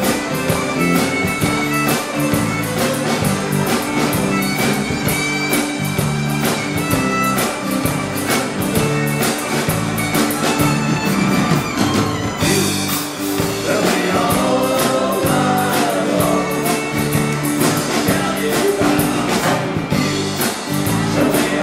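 Live band playing a rock medley: acoustic guitars, fiddle, bass guitar and a drum kit keeping a steady, driving beat.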